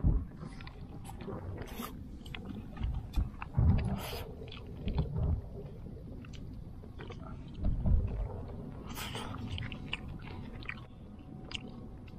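A person eating grilled fish with chopsticks from a plastic bowl, chewing close to the microphone, with scattered small clicks and irregular low bumps.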